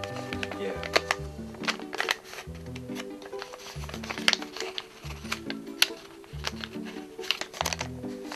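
Background music with a repeating pattern of held low notes, over sharp crackles and clicks of origami paper being creased and handled.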